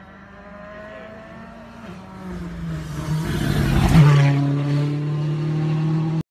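A rally car approaches with its engine note rising, passes close by about four seconds in with a loud rush of engine and tyre noise, then carries on away at a steady high engine pitch.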